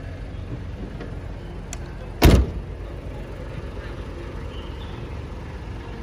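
A car door shut once with a single solid thump, about two seconds in, over a low steady background rumble.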